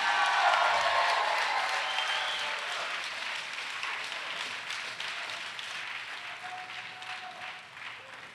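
Church congregation applauding, with a few voices calling out near the start, the applause dying away gradually.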